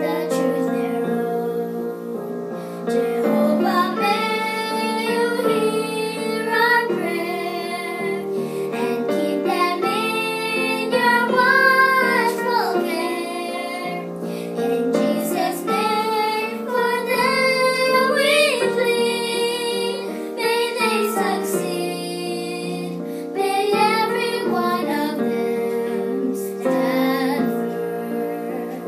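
Two young girls singing a hymn together in unison over a played-back piano accompaniment.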